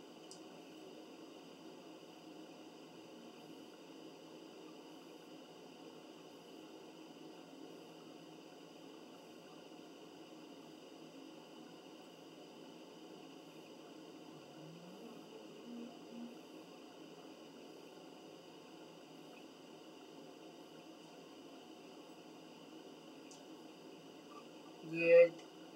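Near silence: steady room tone, with a faint brief sound about fifteen seconds in.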